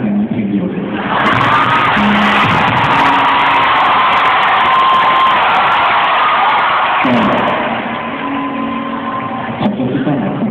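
Concert audience cheering and screaming loudly in an arena, with shrill shrieks through it; the cheer swells about a second in and dies down around seven seconds in.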